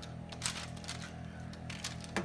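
A wooden spatula tapping and scraping on a parchment-lined metal baking sheet while spreading cooked apple filling: a few short taps about half a second in and again near the end. Faint background music runs underneath.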